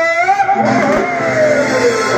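Burrakatha folk singing: a lead voice holds a note, then slides steadily down in pitch over the last second and a half, with the accompaniment running beneath it.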